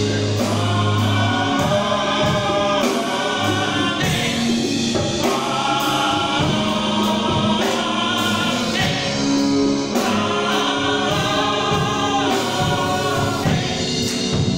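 Gospel choir singing together in harmony in phrases of a second or two, with a band's bass line underneath.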